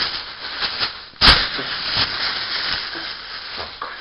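Packing bag rustling and crinkling as hands dig through it for CDs, with one sharp, loud crackle about a second in.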